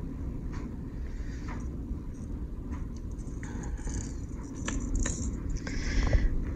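Gloved hands handling hard plastic fishing lures: faint clicks and rustles, over a low steady rumble.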